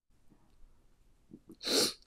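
A person's short, breathy burst of air through the nose or mouth, like a sharp exhale or sneeze, near the end, after a couple of faint ticks.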